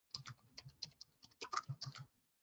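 Computer keyboard typing: a quick, uneven run of faint key clicks as a short search term is typed in.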